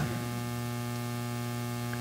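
Steady electrical mains hum in the sound system: a low buzz with a stack of even overtones that holds at one level.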